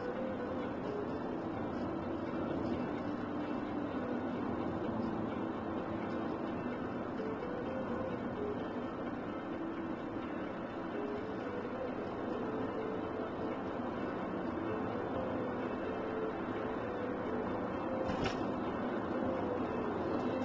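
Steady road and engine noise inside a moving car's cabin, with a short knock near the end.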